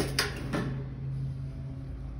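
A couple of light clicks of a hand against the galvanized steel hurricane panels in the first half-second, over a steady low hum.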